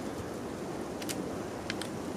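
A few faint clicks from the clip-in shooting yoke of a BOGgear tripod being twisted in its mount, which turns a bit stiffly, over a steady background hiss.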